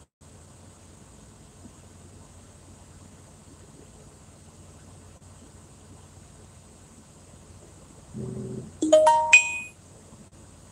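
A steady low hum inside a truck cab, then about nine seconds in a short bright electronic chime: a few ringing tones that fade quickly.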